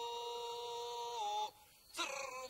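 A singing voice holds one long, high note in folk chant. The note dips slightly in pitch and breaks off about a second and a half in.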